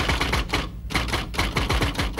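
Typewriter keys striking in a fast, even run of clacks, about five a second, over a low steady hum.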